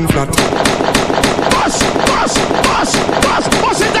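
Rapid, sustained volley of gunshot sound effects, about five shots a second, dropped into a dancehall DJ mix in place of the music, with voices under it.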